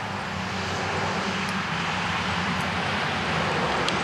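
A steady engine drone from a vehicle, a low hum under a broad rushing noise, swelling over about the first second and then holding.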